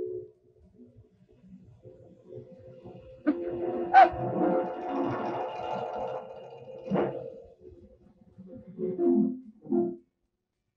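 Background film-score music, quiet at first, then a louder held passage from about three seconds in that breaks off abruptly about seven seconds in, with a sharp accent near four seconds.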